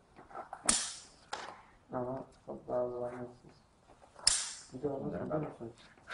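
Scissors cutting EPDM rubber membrane: two sharp snaps, each trailing a brief hiss, the first under a second in and the second about four seconds in. Voices and laughter are heard between them.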